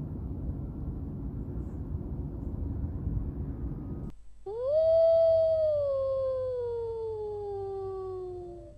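A low rumbling noise for about four seconds, then a single long wolf howl that rises quickly and slides slowly down in pitch.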